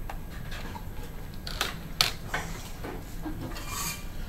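Light clicks and rubbing of a dry-erase marker being handled, with two sharper clicks in the middle, over quiet room noise.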